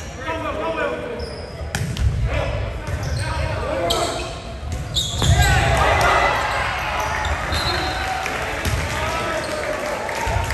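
Volleyball play on a hardwood gym court: the ball is struck sharply about two, four and five seconds in, with short high squeaks from sneakers. Players and spectators shout and talk throughout, echoing in the large hall.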